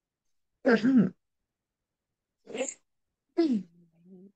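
Three short vocal sounds, the last one falling in pitch.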